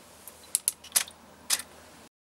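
A few short, sharp clicks at uneven intervals, two close together about half a second in and two more later, from the water-drop photography rig firing: solenoid drop valve, camera shutter and flash.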